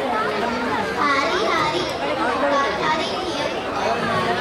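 Children talking, several high voices overlapping one another.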